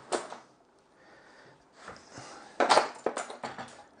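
Knocks and rattles of a metal mitre saw box being turned around and set down on its base, with a sharp knock about two-thirds of the way through and a few smaller clicks after it.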